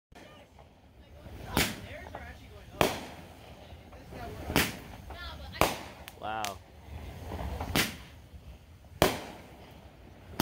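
Aerial fireworks shells bursting overhead, about six sharp bangs in ten seconds, irregularly spaced, the loudest near the end.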